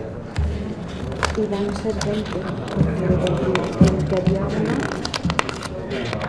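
Low, indistinct talk in the chamber, with ballot papers rustling and several sharp clicks close to the microphone as folded ballots are handled and unfolded.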